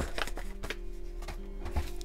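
Soft background music with steady held notes, under a few light clicks of hands handling a kraft paper envelope on a table.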